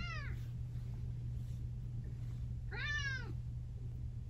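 A long-haired tabby cat meowing twice: a short falling meow right at the start and a longer, rising-then-falling meow about three seconds in. A steady low hum sits underneath.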